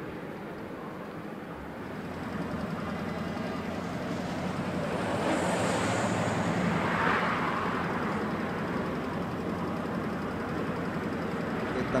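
Road traffic noise: a steady rumble of vehicle engines and tyres that swells to its loudest about six to seven seconds in, then eases slightly.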